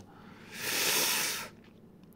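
A single breath, an airy hiss lasting about a second, taken in a pause between spoken phrases.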